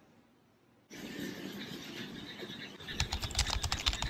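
Near silence for about the first second, then a steady outdoor background hiss. About three seconds in, a rapid run of sharp crackling clicks with a low rumble starts and lasts just over a second.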